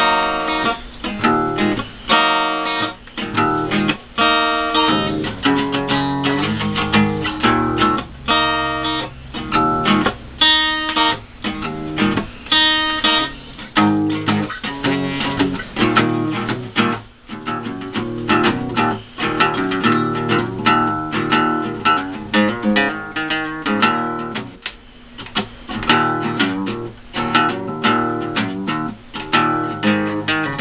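Acoustic guitar played solo, an instrumental song. It starts with chords strummed in separate strokes, then from about halfway goes into a busier, slightly quieter stretch of playing.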